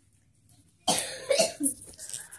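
A girl coughs a few times in quick succession, starting sharply about a second in.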